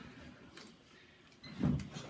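Faint background with a few light ticks, then about one and a half seconds in a short clunk as a test plug is pushed into a metal-clad socket outlet.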